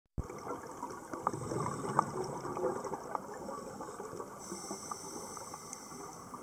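Underwater sound of scuba divers' exhaled bubbles gurgling from their regulators, with a few sharp clicks.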